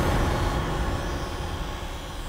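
A low rumbling drone from a dramatic TV background score, slowly fading.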